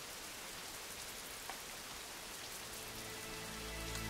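A steady, even hiss like rain falling. Low, sustained music notes fade in under it near the end.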